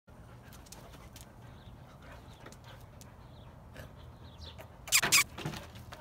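Two dogs sniffing each other, with faint snuffles and small clicks, then two short, loud, breathy huffs close together about five seconds in, followed by a softer one.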